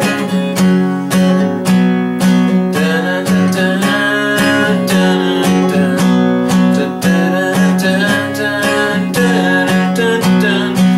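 Takamine steel-string acoustic guitar, capoed at the fourth fret, strummed steadily through an A, D, G, D chord progression with a regular strumming rhythm.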